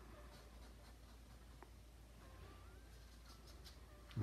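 Near silence with faint scratching of a paintbrush's bristles on canvas, and one small click about one and a half seconds in.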